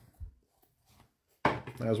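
A single short, soft tap about a fifth of a second in, from card handling on the table, then near silence until a man's voice starts near the end.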